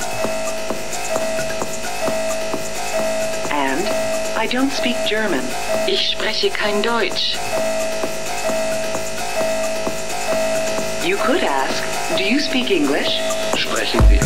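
Techno DJ mix in a breakdown with no kick drum: a synth note pulses over and over at an even rate while warped, pitch-bending voice samples slide through it in a few short phrases. The bass kick comes back right at the end.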